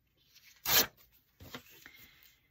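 A sheet of black patterned paper torn along the edge of a steel ruler: one quick, loud rip a little under a second in, followed by fainter rustling of the paper.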